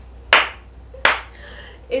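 Two sharp hand claps about three quarters of a second apart, with a weaker third near the end, as a burst of laughing emphasis.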